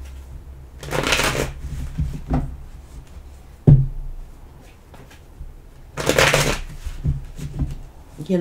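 A deck of tarot cards being shuffled by hand. Two loud, short bursts of shuffling come about a second in and about six seconds in, with a sharp knock near four seconds and softer rustles and taps between.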